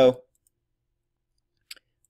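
A single brief computer mouse click near the end, in an otherwise silent stretch.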